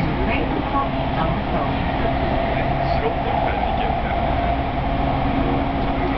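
Inside the cabin of an electric commuter train under way: steady running noise with a low, even hum.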